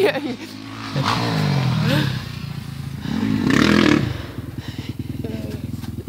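Dirt bike engine revving, its pitch rising about a second in, loudest around the middle, then running with a steady fast firing beat.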